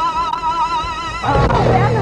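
A soundtrack tone, held and wavering, gives way about a second in to a loud, harsh roar-like cry whose pitch sweeps up and down.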